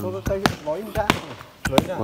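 Wooden hand rammers pounding earth packed in a wooden wall form, ramming a rammed-earth wall: three sharp thuds at a steady pace, with a man talking over them.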